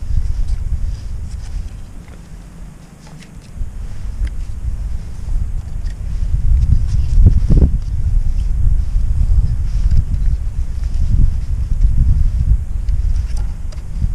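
Wind buffeting the microphone, a low uneven rumble that eases off for a moment about two seconds in, with a few faint handling knocks as the drone is turned in the hands for its calibration.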